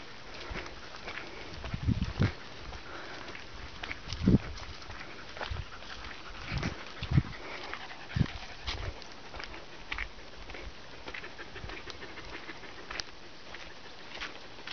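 A pack of leashed dogs and a person walking on a dirt track: irregular footsteps and low thumps, with the dogs' breathing and movement throughout.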